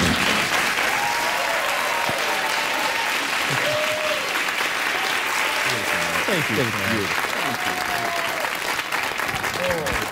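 Studio audience applauding and cheering, with a few whoops rising above the clapping.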